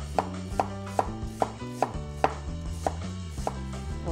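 Chinese cleaver slicing ginger on a wooden cutting board, knocking on the board about three times a second in a slightly uneven rhythm.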